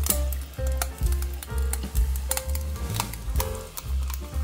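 Background music with a pulsing bass line, over carbonated water being poured onto ice in a glass, fizzing with fine crackles.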